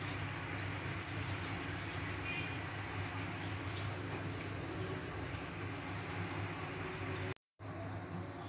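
Hot food sizzling steadily, a fine crackling hiss with a low hum beneath, cut off abruptly near the end.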